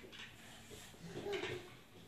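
A quiet room with a brief, faint murmur from a child's voice a little past the middle, and soft handling sounds as a small model car is set down on a wooden floor.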